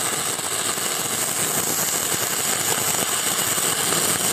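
Shielded metal arc (stick) welding arc burning a 6013 electrode on a horizontal weld: a steady, continuous crackling sizzle.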